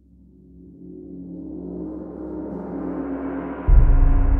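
Orchestral tam-tam swell: a rolled gong that rises steadily in loudness, shimmering with many ringing tones. Near the end it peaks into a sudden deep orchestral bass drum hit that rings on.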